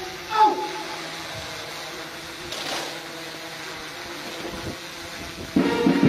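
A voice's short falling call just after the start, then a hushed pause with faint background murmur. About five and a half seconds in, a brass band starts playing loudly as the officers salute.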